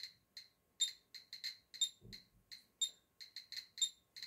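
Handheld radiation meter (Geiger counter) clicking at random intervals, about four or five short, high ticks a second. Each click is a detected count of radiation from uranium ore held close to the meter.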